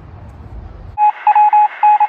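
Censor bleep: a loud electronic beep tone that starts about a second in, broken into several short beeps over about a second, with the rest of the audio cut to a thin, telephone-like band while it sounds. It masks a word spoken after a flubbed take.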